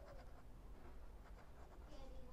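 Faint scratching of a pen writing cursive on notebook paper.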